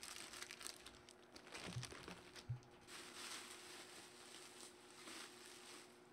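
Faint crinkling and rustling of a clear plastic bag and bubble wrap being handled, with one sharper crackle about two and a half seconds in.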